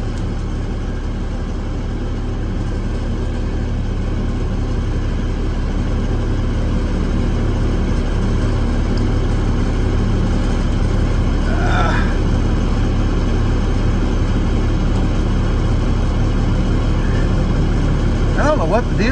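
Truck engine idling, heard from inside the cab under the dashboard as a steady low hum. A brief rising squeak comes about two-thirds of the way through.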